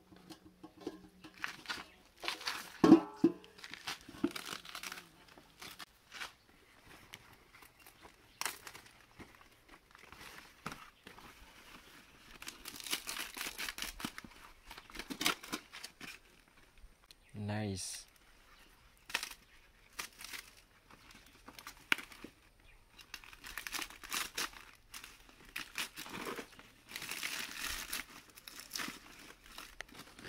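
Fresh banana leaves rustling and crinkling as they are handled, folded and pressed down over a saucepan, with scattered light knocks of cassava pieces being set into the pot. The sounds come and go irregularly.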